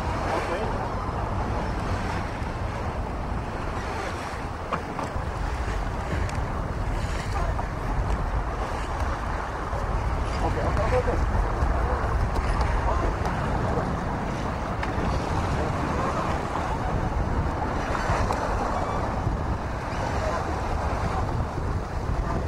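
Wind buffeting the microphone over the rush of sea water along a sailing yacht's hull, a steady noise with a deep rumble that swells with the gusts.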